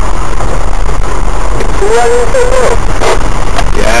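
A 4x4 driving along a rough unsurfaced lane: a loud, steady low rumble of engine and tyres, with a couple of knocks around three seconds in. A voice speaks briefly in the middle.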